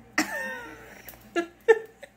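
A woman bursts out laughing: a loud, high pitched cry that slides down in pitch, followed by two short sharp bursts of laughter about a second later.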